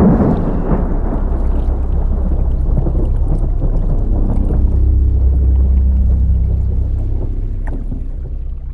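A deep, steady rumble that begins with a sudden hit and eases off slightly near the end.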